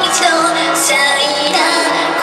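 A Japanese idol singer singing an upbeat song into a handheld microphone over recorded backing music, amplified through stage speakers.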